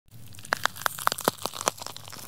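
Logo-intro sound effect: a run of sharp, irregular clicks and crackles over a low steady hum.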